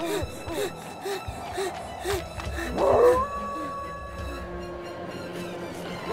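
A wolf howls: a loud onset about halfway in, then one long, nearly level held note. Before it come quick, rhythmic breaths, about two a second.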